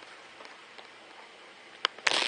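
Steady soft trickle of water running down the Tetra Fauna Viquarium's rock waterfall, with one sharp click near the end.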